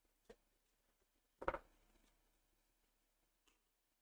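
Near silence: room tone, broken by a faint click early and one short soft sound about a second and a half in.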